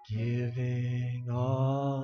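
A live worship band playing a slow song, with a strong sustained low note under a long held sung tone and no clear words.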